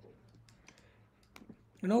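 A few faint, sharp clicks of a stylus tapping on a writing surface while handwriting letters, most of them clustered after the middle, against low room tone.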